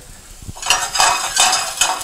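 Diced sweet potato sizzling in hot olive oil in a stainless steel frying pan as the pan is shaken on the gas burner; a light knock about half a second in, then a loud, dense sizzle.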